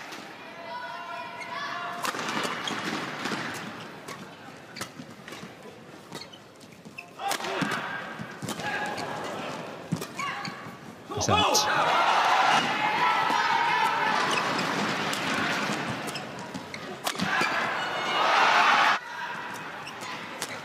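Badminton rally: sharp racket hits on the shuttlecock at irregular intervals. Arena spectators' voices swell loud about halfway through and drop away again shortly before the end.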